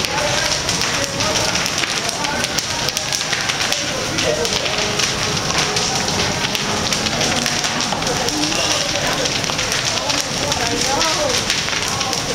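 Wooden houses fully ablaze: the steady rush of a large fire with dense, constant crackling and popping of burning timber. Faint voices can be heard behind it now and then.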